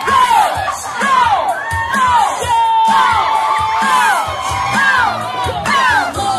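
Party crowd screaming and cheering over loud music with a steady beat, many high voices whooping at once, one of them holding a long high note about three seconds in.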